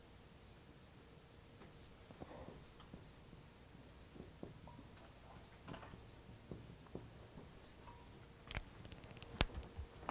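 Dry-erase marker squeaking and scratching on a whiteboard as words are written, faint. Two sharp clicks near the end.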